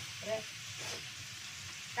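Salted fish, shallots and green chilies sizzling steadily in hot oil in a wok, stirred with a wooden spatula.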